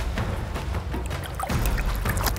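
Background music over splashing of shallow water as a small barracuda is released by hand.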